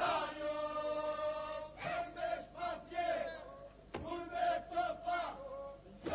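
Men's group singing in the Lab polyphonic style of Tepelenë: a drone held steady by the group under louder lead voices. The lead voices enter in strong phrases at the start and again about two and four seconds in.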